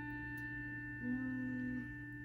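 A single digital piano note held and slowly fading, a steady pure tone. About a second in, a child softly sings a note of her own below the piano's pitch, trying to match it by ear.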